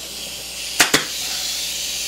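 Pneumatic upholstery staple gun firing two staples in quick succession about a second in, fastening fabric to a chair frame, over a steady hiss of compressed air.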